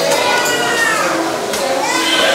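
Several people's voices at once, high children's voices among them, in a steady murmur with no single speaker standing out.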